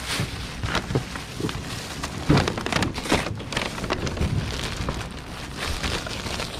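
Crinkling and rustling of white packing wrap as it is pulled open and handled, in irregular crackles, with the loudest crinkles around the middle.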